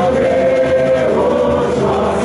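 Samba parade music with a chorus of many voices singing together, holding a long note through the first half.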